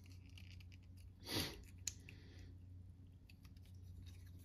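Faint clicks and light handling of a small plastic transforming toy figure as its parts are adjusted in the hands, with a brief soft hiss a little over a second in.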